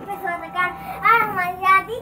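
A child's voice in a wordless sing-song, drawn-out notes sliding up and down.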